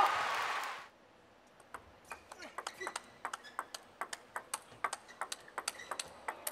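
Celluloid-type table tennis ball being struck back and forth in a fast rally: a quick, uneven run of sharp clicks, several a second, from bats and table, starting about two seconds in.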